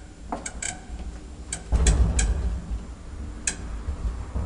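Old modernised elevator giving several sharp metallic clicks, with a heavier clunk and low rumble a little under two seconds in.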